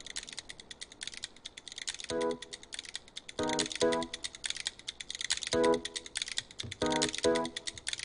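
Opening of a TV commercial's soundtrack played over a hall's sound system: a dense run of rapid, irregular clicks like typing, punctuated by six short pitched musical notes.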